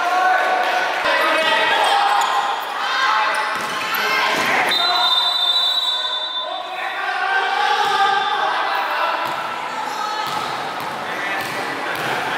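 Basketball game in a gym: a ball bouncing on the hardwood floor amid players' voices echoing in the hall, with a high, steady whistle blast lasting about two seconds around halfway through.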